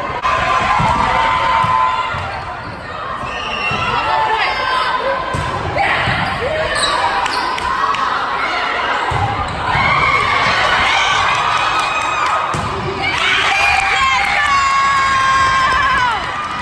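Crowd noise of a volleyball match in a large gymnasium: players and spectators shouting and calling over each other, with the thumps of the ball being played. The shouting grows louder into cheering near the end.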